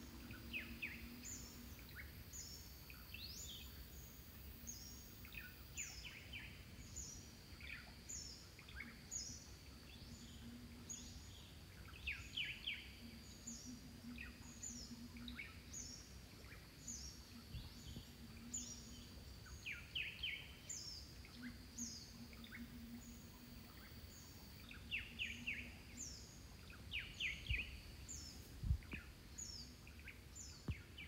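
Faint birdsong: a short high call repeated about once a second, with scattered lower chirps, over a low background rumble.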